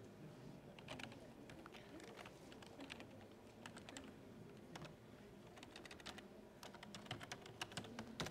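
Faint typing on a computer keyboard: short irregular runs of keystrokes, densest near the end, as an account is logged into.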